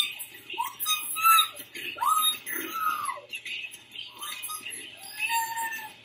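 A young woman's high-pitched, wordless excited squeals: a string of short cries that each rise and fall in pitch.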